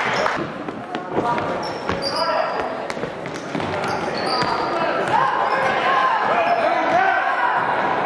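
Basketball bouncing on a hardwood gym floor, with players' sneakers squeaking and footsteps during live play. Shouting voices call out over it, and the whole sound echoes in a large gym.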